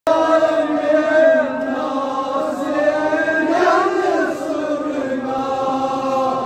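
A group of men chanting a noha, a Shia Muharram mourning lament, in long drawn-out notes.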